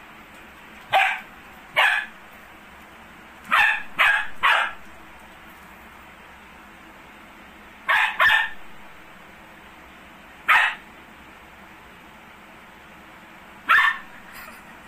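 A dog barking in short, sharp barks, about nine in all: single barks and quick runs of two or three, with pauses of several seconds between some of them.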